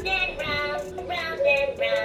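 A high singing voice holding a simple melody in a few sustained notes.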